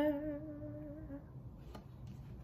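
A woman's voice holding the final note of the song softly on one steady pitch, fading out about a second in. A faint click follows near the end.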